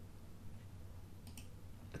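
Soft computer mouse click, a quick pair of ticks about two-thirds of the way through, over a faint steady low hum.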